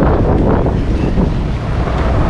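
Wind buffeting the camera microphone: a steady, loud, low rushing noise.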